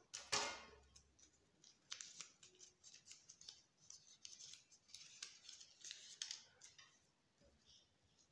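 Faint crackling and rustling of paper cutouts being handled and pressed together, in many short strokes, after a single sharper scissors sound just after the start.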